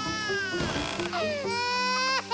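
Cartoon cat character wailing and sobbing in long cries that fall in pitch, with a choked sob in the middle, over background music.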